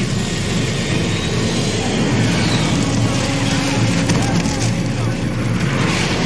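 Film sound effect of a four-engine jet airliner plunging out of control: a loud, steady rushing roar with a deep rumble underneath.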